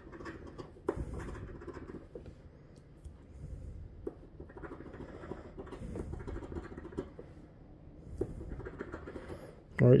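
A large metal coin scratching the coating off a paper scratch-off lottery ticket on a wooden table, in repeated strokes with a few light clicks.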